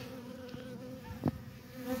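Honey bees buzzing at the hive entrance: a steady low hum of wingbeats, with one brief knock about a second and a quarter in.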